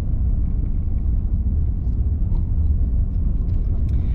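Vehicle driving slowly on a gravel road, heard from inside the cabin: a steady low rumble of engine and tyres.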